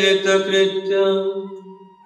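A man chanting Sanskrit invocation prayers, holding one long steady note that fades out near the end.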